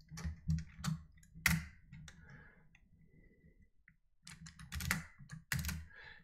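Computer keyboard keys and mouse buttons clicking: a few separate clicks in the first second and a half, a lull, then a quicker run of clicks near the end.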